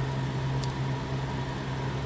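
A steady low machine hum with a faint hiss under it, and one faint click about half a second in.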